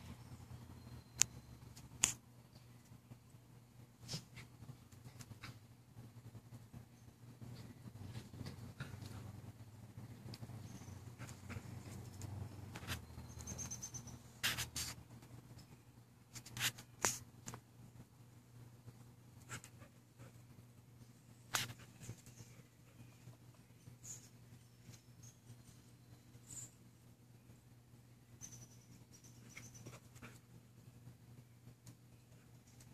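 Faint sounds of two dogs playing on a lawn: scattered sharp clicks and scuffs over a steady low hum.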